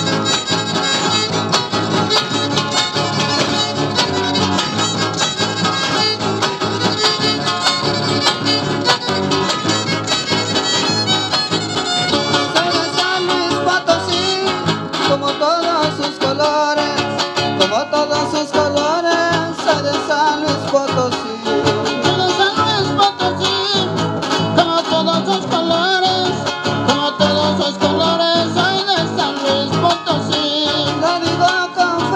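Live son huasteco (huapango) from a Huasteca string trio: a violin carrying a wavering melody over strummed guitars, playing steadily throughout.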